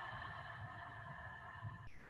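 A struck bell ringing out: several steady overtones slowly fading, then damped to a stop near the end.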